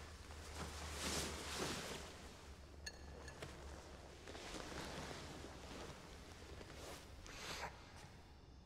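A spoon clinking once against a soup bowl about three seconds in, among soft rustling and swishing.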